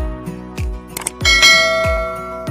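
Channel intro jingle: electronic music with a deep falling bass thump about every half second, sharp clicks, and a bright bell chime about a second and a half in that rings out and fades. The click and chime are the sound effects of a subscribe-button-and-notification-bell animation.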